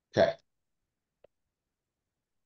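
A single brief spoken "okay", then near silence.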